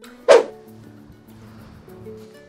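Background music with a steady tune, and a single short, loud animal call about a quarter of a second in.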